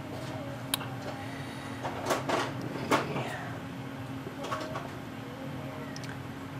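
A few light metallic clicks as small parts are handled: a steel locating pin and a bearing shell being fitted into a machined aluminum block. A steady low hum runs underneath.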